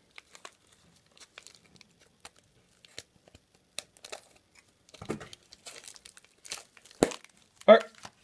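Scissors cutting into a tape-wrapped mail package, the tape and plastic wrapping crinkling and tearing in scattered faint crackles and clicks, with a sharper snip about seven seconds in.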